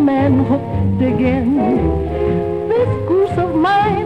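Music: a 1940s small jazz band with horns playing a slow swing tune between sung lines, a melody line wavering with wide vibrato over a full low accompaniment.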